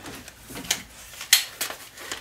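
Handling noise from shotguns being lifted and shifted in the hands: a few sharp clicks and knocks, the loudest about a second and a half in.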